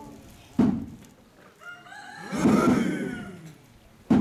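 A rooster crows once, about two seconds in, a single call of about a second with a rising-then-falling pitch. Just before it, near the start, comes one sudden short loud sound.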